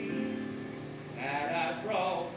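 Held accompaniment notes die away, then about a second in a singing voice enters on a phrase with heavy, wavering vibrato: a show-tune duet.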